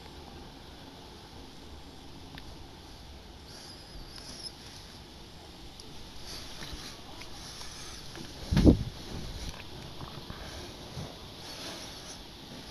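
Steady, low wind noise. One short, loud low thud comes about eight and a half seconds in and dies away within a second.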